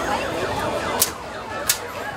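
Two sharp shots from shooting-gallery rifles, about two-thirds of a second apart, over a fast-repeating falling electronic siren-like wail and crowd chatter.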